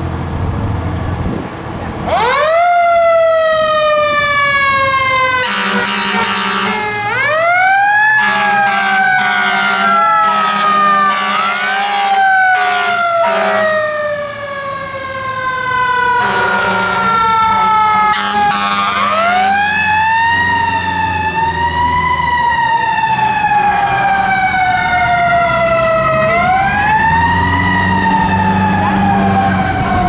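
Siren of an American ladder fire truck, winding up quickly and then sliding slowly down in pitch, over and over. Twice, at about five seconds and at about sixteen seconds, a low steady horn blast sounds under it.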